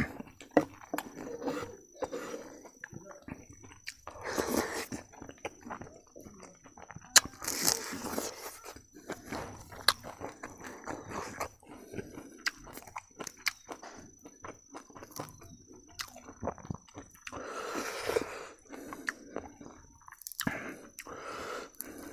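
Close-up eating sounds: wet chewing and lip smacking of rice and dal, with crunching as dried fish is bitten and many short clicks throughout; the louder, longer chewing comes about four seconds in, again about seven seconds in, and near the end.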